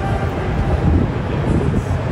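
Steady low rumble of city background noise.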